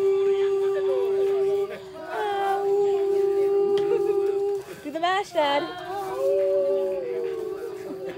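Long howls held on one steady pitch, three in a row with short breaks between, the first swooping up into its note.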